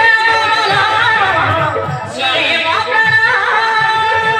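A high voice singing a Desia folk-drama song with long held, wavering notes over light musical accompaniment, pausing briefly about halfway through.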